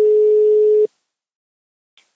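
Telephone ringback tone on an outgoing call: a single steady beep lasting about a second, the line ringing at the other end.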